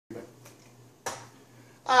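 A single sharp click about a second in, with a fainter one before it, over a low steady hum; a man's voice begins right at the end.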